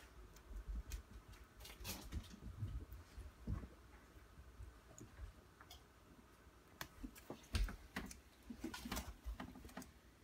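Bearded dragon snapping up and chewing a superworm: faint, scattered crunching clicks, bunched in short runs near the start and again toward the end.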